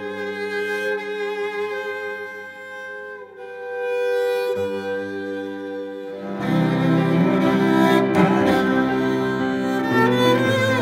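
Cello played with the bow: long, held notes, then from about six seconds in a louder, fuller passage with quicker note changes.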